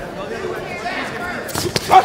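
Boxing gloves landing punches: a few sharp smacks in quick succession about one and a half seconds in, the last one the loudest.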